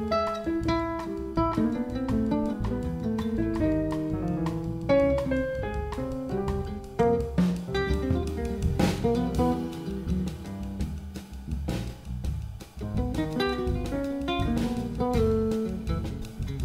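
Jazz quartet playing: a nylon-string electric-acoustic guitar plays a quick single-note line over electric bass, piano and drum kit. Cymbal crashes ring out a few times, about seven, nine and fourteen seconds in.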